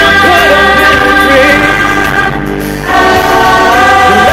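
Live amplified music: a large group of singers singing together over held backing chords and bass, heard through a concert PA, dipping briefly in loudness a little past the middle.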